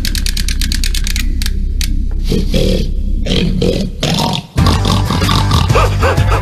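Wind-up chattering teeth toy clacking rapidly, about a dozen clicks a second, over a low growl. The clicking stops about three seconds in. After a brief drop-out the sound comes back as a loud, dense rumble.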